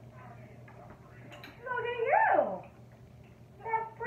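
A woman's high, sing-song voice praising a dog: one drawn-out word that rises and then falls about two seconds in, and a short phrase near the end. A faint click comes just before the first word.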